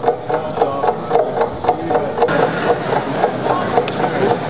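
Background music with a steady pulse of about two beats a second.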